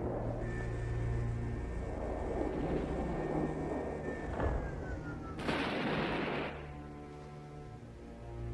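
Film soundtrack: orchestral score under sci-fi battle sound effects of weapon fire. A high held tone slides downward around four to five seconds in, then a loud explosion hits about five and a half seconds in and fades out, leaving the sustained score.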